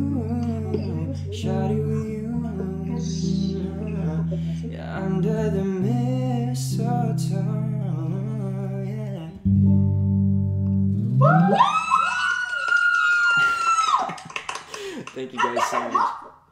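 Acoustic guitar strummed in steady chords under a male voice singing, until about eleven seconds in. As the guitar stops, a loud high-pitched voice rises and holds for about three seconds. Excited voices follow near the end.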